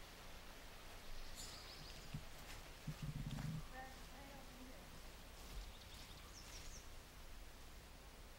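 Faint outdoor ambience with birds chirping briefly, twice, high-pitched. A short low rumble about three seconds in is the loudest moment.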